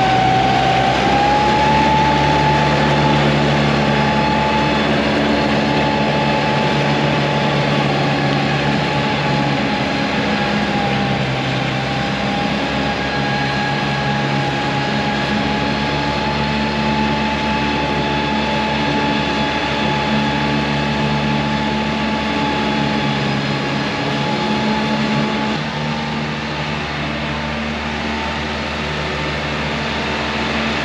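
John Deere 3046R compact tractor's diesel engine running under load with its 72-inch mid-mount mower deck engaged, cutting tall grass, with a steady whine over the engine. It grows a little quieter as the tractor mows away, dropping about 25 seconds in.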